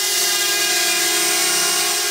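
Small quadcopter drone's propellers buzzing: a steady, many-toned hum that holds at one pitch.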